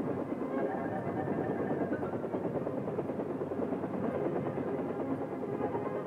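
Helicopter in flight, its rotor chop and engine running steadily, with music playing over it.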